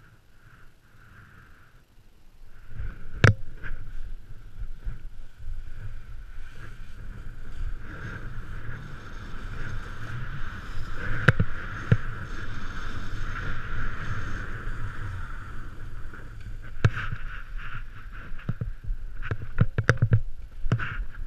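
Snowboard sliding and carving through powder snow, a continuous rushing hiss and rumble that starts about two seconds in, with occasional sharp knocks.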